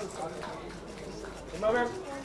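People's voices calling out over one another, with one louder, short call near the end.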